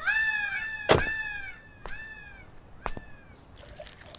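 An animal calling: a run of short, high, arched cries, each about half a second, crowding together at first and then spacing out, with a few sharp clicks among them, the loudest about a second in.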